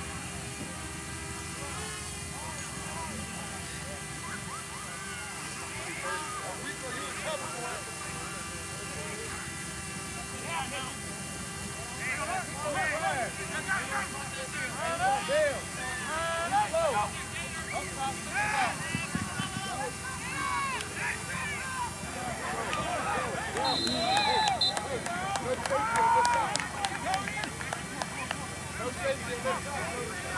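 Players, coaches and sideline spectators shouting at a distance across a football field, the voices picking up through the second half. A short, steady, high-pitched whistle blast, typical of a referee's whistle, comes about two-thirds of the way through.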